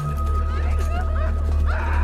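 TV drama soundtrack playing: a deep steady bass drone from the score, with a thin held tone and short high whining cries that bend up and down over it, and a louder pitched sound coming in near the end.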